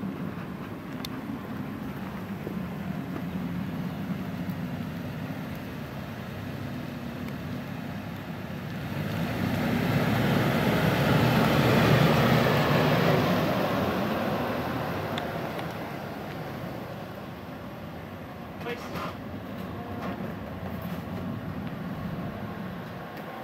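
A vehicle passing: a broad noise that swells up about nine seconds in, peaks around twelve seconds and fades away by sixteen, over a steady low outdoor hum.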